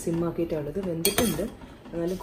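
A person talking, with one short metallic clink of kitchenware about a second in.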